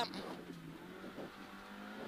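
Suzuki Swift rally car's engine heard from inside the cabin, running at fairly steady revs, its pitch rising slightly about halfway through.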